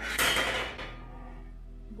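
A handful of metal bolts and nuts clattering onto a tile floor, a bright jingling rattle that dies away within a second, over quiet background music.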